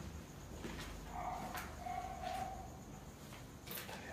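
Faint animal whining: two short held calls about a second in, with a few scattered knocks.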